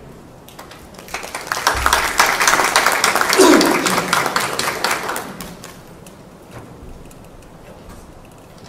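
Audience applauding: the clapping starts about half a second in, is loudest in the middle and dies away by about six seconds.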